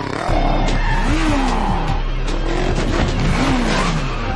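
Cartoon motorcycle sound effects: engines revving in several rising and falling sweeps, with tyres skidding, over background music.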